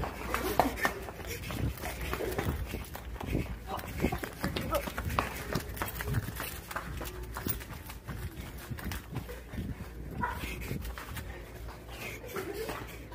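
Footsteps on a hard floor mixed with the knocks and rubbing of a hand-held phone, an irregular run of soft clicks and thumps while walking.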